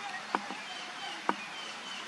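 Two sharp clicks about a second apart from handling the camera while adjusting the zoom, over faint outdoor background with a few short, distant bird chirps.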